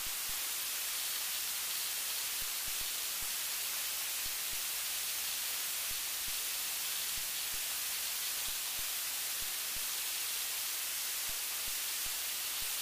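Steady, even hiss of recording noise, with no other clear sound above it.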